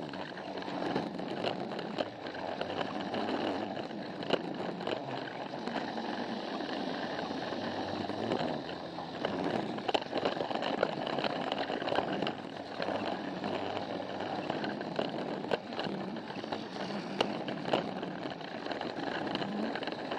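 Battery-powered Plarail toy train (Thomas) running along plastic track, its small motor and gearbox whirring steadily while the wheels rattle over the track with scattered clicks.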